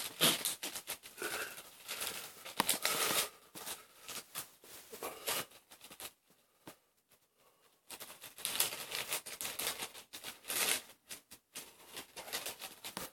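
Thin Bible pages being flipped and turned by hand: a run of quick paper rustles and flicks, with a pause of about two seconds halfway through.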